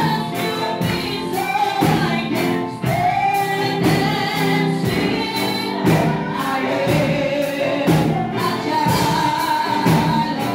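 Gospel worship music: voices singing together over a steady beat, led through a microphone.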